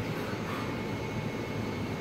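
Steady background noise of a workshop, an even whooshing hum with no distinct strikes or tones.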